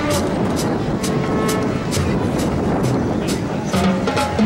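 Marching band drum line playing a drum break: snare, tenor and bass drums striking in a steady beat, about two main strokes a second.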